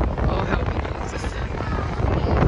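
Rushing air buffeting a phone microphone on a spinning swing-out ride, a steady low rumble of wind while the car circles at speed.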